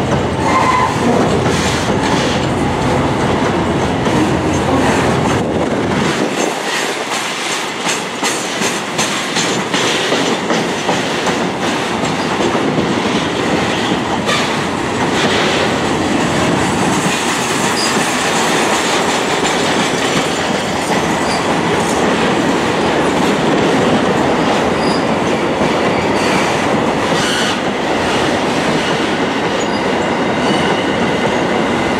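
Loaded container flat wagons of a freight train rolling past close by: steel wheels running over the rails with a steady noise and a clickety-clack of short clicks as the wheel sets cross the rail joints.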